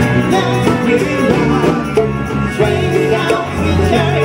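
A live funk band jamming, with several voices singing over drums, congas and bass.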